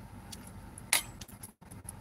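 Metal utensil clinking against a metal bowl: one sharp clink about a second in, with a few fainter ticks around it.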